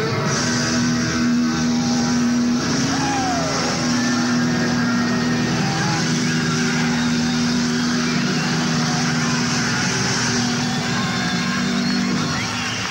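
Distorted electric guitars in a live rock band holding a long sustained, droning chord, with a short bending glide about three seconds in.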